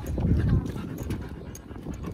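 Metal clip and buckle of a dog's nylon harness clicking and rattling as it is fastened on a Rottweiler, with a low rumble in the first half-second.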